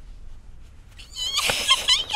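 A woman's high-pitched, wavering wordless vocalising, without words, that starts about a second in after a quieter opening.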